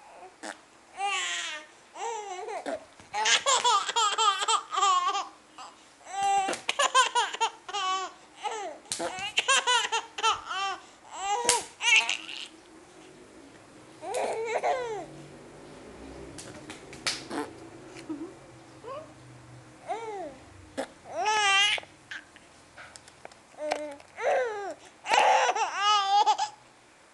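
Baby laughing in repeated bursts of high-pitched, pulsing giggles, with babbling and short pauses in between.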